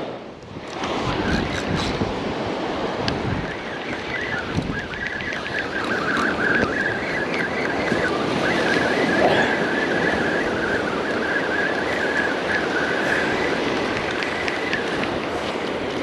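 Surf washing up the beach with wind buffeting the microphone. From about two seconds in until near the end, a wavering whir sits over it, fitting a spinning reel being cranked as a small whiting is reeled in.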